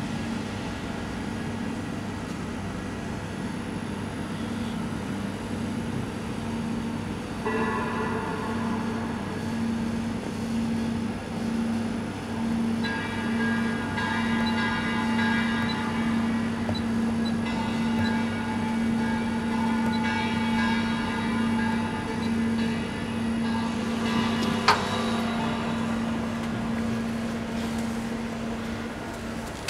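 A running machine hums steadily with a regular pulsing beat. From about seven seconds in, higher steady whining tones come and go, and a single sharp click sounds near the end.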